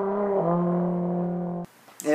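Trombone playing a phrase that steps down to a low note, held steady for over a second, then cut off abruptly.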